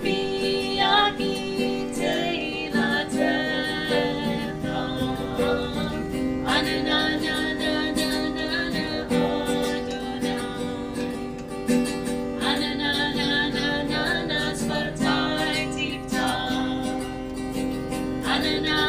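A woman singing while strumming an acoustic guitar: a slow song in sung phrases over steady chords.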